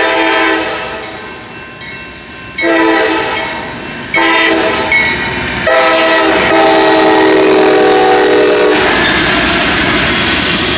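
CSX freight locomotive's multi-note air horn blowing a series of blasts as the train approaches: one ends about half a second in, two of about a second and a half follow, then one long blast of about three seconds. After the horn stops, the diesel locomotives and railcars pass close by, with engine rumble and wheel noise.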